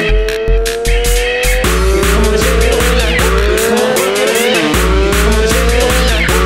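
Hard electronic dance track without vocals: a heavy, booming low kick-bass under regular drum hits, with a synth lead whose notes slide upward in pitch, repeating every second or two.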